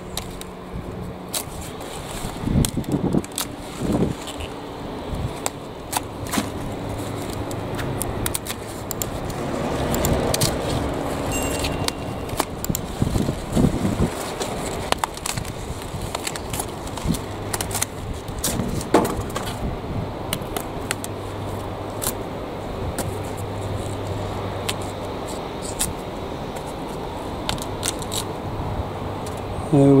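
Bypass secateurs snipping through cauliflower leaves and stalks, with the crackle and rustle of the stiff leaves being handled and pulled away. Sharp clicks are scattered throughout over a steady low hum.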